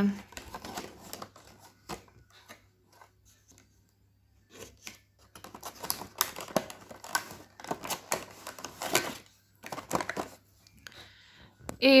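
Cardboard advent calendar box being torn open and handled: scattered rustles, scrapes and clicks, with a quiet stretch a few seconds in and then a busier run of handling as a small can of dry shampoo is drawn out of its compartment.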